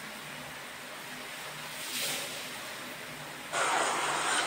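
Embroidered fabric rustling as it is handled: a brief swell about two seconds in, and louder from near the end, over a steady low hiss with a faint hum.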